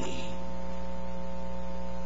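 Steady electrical mains hum made of several fixed tones, with a faint hiss underneath.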